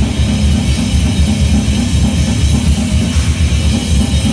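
A grindcore band playing live and loud: fast, steady drumming under distorted guitar, with no vocals.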